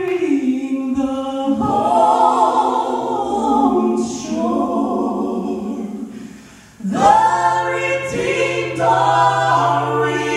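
Gospel vocal trio, a man and two women, singing in close harmony into microphones and holding long chords. The voices fade away just before seven seconds, then come back in strongly on a new phrase.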